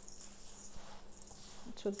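Hands rubbing and squeezing a crumbly mix of flour, oats, sugar and cold butter in a stainless steel bowl, a faint sound. A low steady hum runs underneath.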